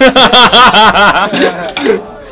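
A man laughing loudly and heartily, a quick run of 'ha-ha-ha' that eases off near the end.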